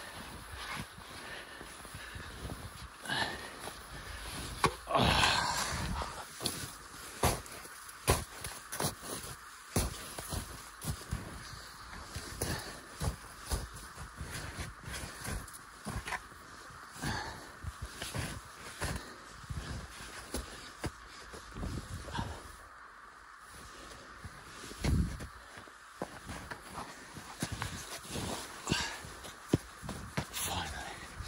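Footsteps wading and crunching through deep snow, irregular and heavy, with the walker breathing hard from the effort. There is a louder burst about five seconds in.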